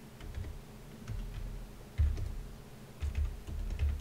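Typing on a computer keyboard: scattered keystrokes, with dull low knocks about two seconds in and again near the end.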